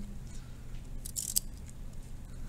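A pen scratching briefly on notebook paper as small tick marks are drawn along a graph's axis, the clearest stroke a little past a second in, over a low steady background hum.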